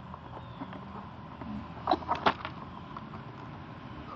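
A brief cluster of sharp clicks and rattles about two seconds in from a red plastic sifting scoop of leaf litter and soil being handled and set down.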